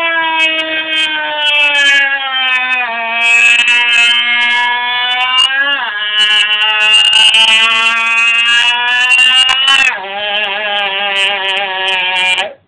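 A person's voice holding one long, loud wailing note, its pitch drifting down and stepping lower a few times, with a wavering quiver near the end.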